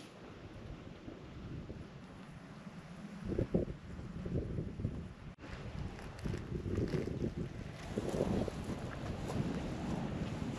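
Wind buffeting the microphone: an irregular low rumble that gets stronger about three seconds in, with a momentary drop-out about halfway through.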